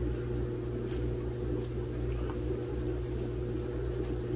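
Steady low electrical hum of a plugged-in hand-held hot wire foam cutter as its heated wire slides through XPS foam board, with a couple of faint ticks.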